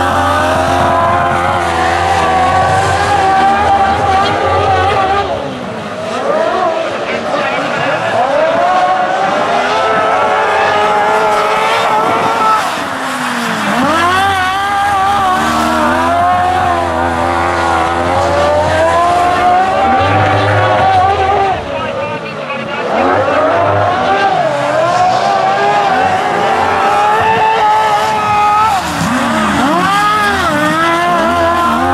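Several racing sidecar engines running hard together, their pitch rising and falling as they accelerate out of the bends and ease off into them. The sound drops briefly three times, about six, thirteen and twenty-two seconds in.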